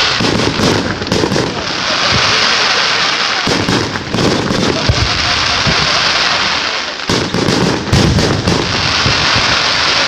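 Aerial fireworks display: a dense, continuous crackle of many small pops from bursting shells, with groups of deeper booms near the start, in the middle and near the end.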